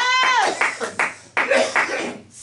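A drawn-out shouted vowel, then a run of hand claps mixed with more voices.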